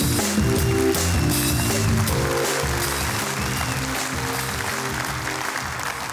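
Theatre audience applauding, with music playing over the clapping.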